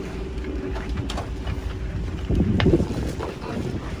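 Wind buffeting the microphone over the low, steady rumble of the yacht's engine, with a stronger gust a little past the middle.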